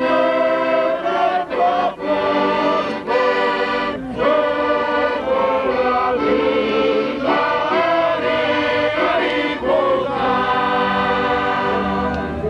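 Piano accordion playing a folk tune while a group of people sing along, with short breaks between phrases.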